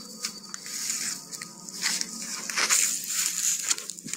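Footsteps crunching through undergrowth, with tall grass and brush swishing and rustling against the walker in irregular bursts.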